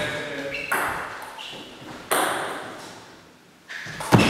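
Table tennis ball being struck by bats and bouncing on the table during a rally, a few sharp pings ringing on in the reverberant hall, the loudest about two seconds in.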